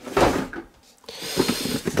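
A cardboard box of oysters is set down on a wooden counter with a knock, then the cardboard scrapes and rustles as it is handled.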